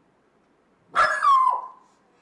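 A dog barks once, about a second in: a single loud bark that falls in pitch and dies away within about half a second.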